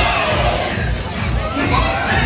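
Audience cheering, with children shouting excitedly, over loud show music during a live stage performance.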